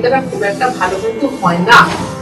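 A woman speaking, with a brief, loud hiss near the end.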